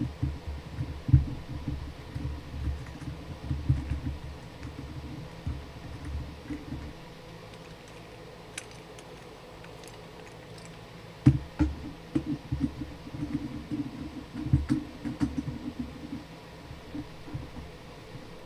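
Desk-clamp mount of a microphone boom arm being fitted and tightened onto a desk: irregular low knocks and thumps in two bouts, with a few seconds' pause between them.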